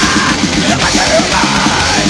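Hardcore punk recording played at full band volume, with distorted guitars and drums under a yelled vocal.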